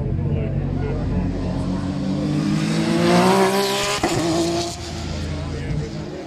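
Car engine accelerating hard past the listener: its pitch climbs for about four seconds and is loudest just before a sudden drop in pitch about four seconds in. It then runs on lower as the car pulls away.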